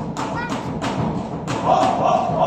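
Folk dancers' feet stamping on a wooden floor, about two stamps a second, over a small folk band with accordion and drum playing the dance tune.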